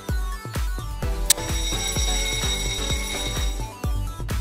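Alarm-clock bell ringing sound effect, starting with a sharp click about a second in and ringing for about two seconds, signalling that the quiz countdown has run out. Background music with a steady beat plays underneath.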